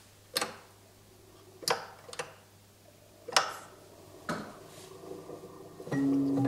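Five sharp mechanical clicks, spaced about a second apart, each ringing briefly, from a Swiss cylinder music box's mechanism as it is set going by hand. The box's first notes sound right at the end.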